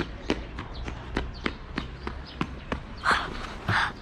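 Footsteps on a paved sidewalk, a brisk walking pace of about three steps a second, with two short breathy bursts close to the microphone near the end.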